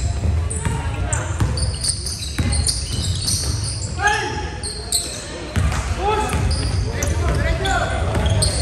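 Basketball bouncing on a hardwood gym floor in repeated knocks, with short sneaker squeaks and players calling out, all echoing in a large gymnasium.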